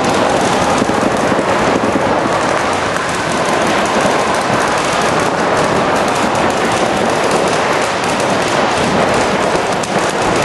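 Several paintball markers firing in rapid, continuous volleys of pops inside a large hall.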